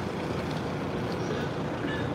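Steady city street traffic noise.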